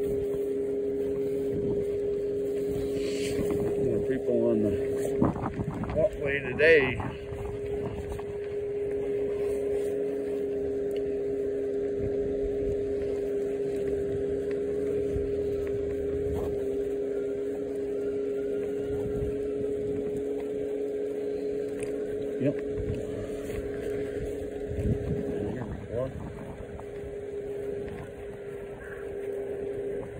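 Electric scooter's motor whining at a steady pitch while it cruises along a paved path, over tyre and wind noise. A few brief voice-like sounds come about four to seven seconds in.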